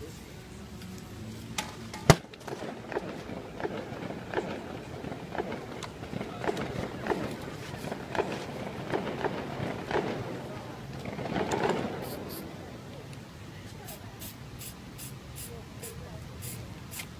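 Spray-paint cans and tools being handled during street spray-paint art. There is a sharp knock about two seconds in, then scattered clatter and knocks. From about twelve seconds a quick regular run of short high clicks, about two to three a second, follows.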